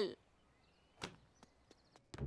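Near silence, broken by one short, sharp click about a second in and a few much fainter ticks after it.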